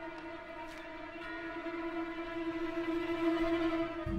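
Orchestral music from a contemporary opera: one long held note that swells louder towards the end, with fainter held tones above it.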